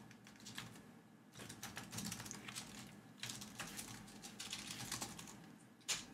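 Typing on a computer keyboard: two bursts of rapid key clicks, then one sharper, louder click near the end.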